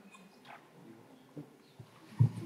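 Near silence: room tone in a hall, with a few faint short clicks and knocks.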